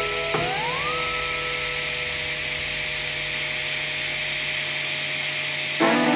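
3D printer running: a steady electric whine from its stepper motors over a hiss, the pitch sliding up about an octave half a second in and then holding. Guitar music cuts in just before the end.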